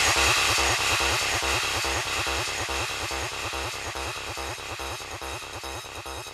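Hard trance music: a rapid, evenly repeating synth pattern of about five pulses a second over deep bass pulses, fading steadily away.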